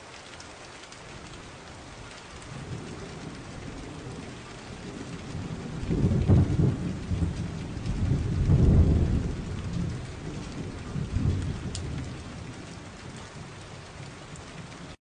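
Steady rain-like hiss with deep low rumbles swelling up about six seconds in, again around nine seconds, and once more near eleven seconds, as of rain with thunder.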